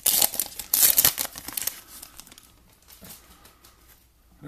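Foil wrapper of a 2018 Select football trading card pack being torn open and crinkled, dense and loudest in the first two seconds, then fainter rustling as the cards are slid out and handled.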